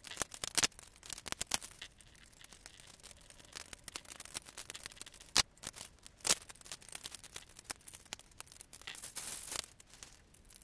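LEGO plastic bricks clicking and rattling as the cylinder head of a brick-built model engine is handled and pressed back onto its block: irregular small clicks with a few louder snaps, and a short scraping rustle of plastic near the end.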